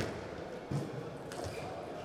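Celluloid-type table tennis ball clicking off bats and the table in a fast doubles rally: one sharp click right at the start, then fainter knocks later on.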